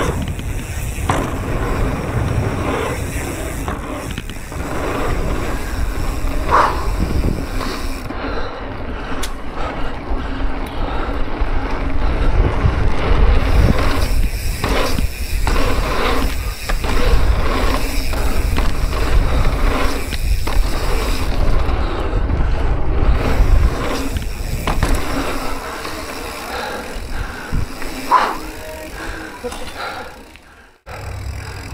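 Mountain bike ridden fast over a dirt pump track: wind rushing over the microphone and knobby tyres rolling on packed dirt, rising and falling as the bike goes over the rollers, with a few sharp clicks and rattles from the bike.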